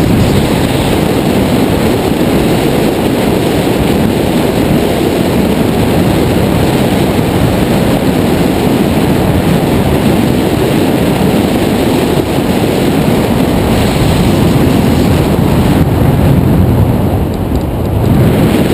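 Loud, steady rush of airflow buffeting the microphone of a camera mounted on a tandem hang glider in gliding flight, easing briefly near the end.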